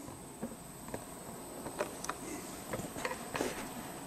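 Quiet room noise: a steady faint hiss with a thin high tone, and a few faint, short clicks and ticks scattered through it.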